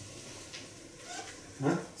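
A pause in a small room with only faint background sound, then near the end a woman's short hesitant "eh" before she goes on speaking.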